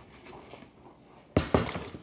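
Two sharp knocks about a fifth of a second apart, about one and a half seconds in: something striking the wooden tabletop near the recording phone.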